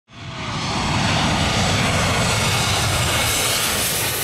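Twin-engine jet airliner passing low overhead on final approach with its landing gear down: a loud, steady rush of jet engine noise that swells in quickly at the start.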